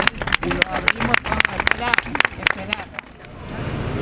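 A small group applauding, with irregular hand claps and voices mixed in; the clapping stops about three seconds in.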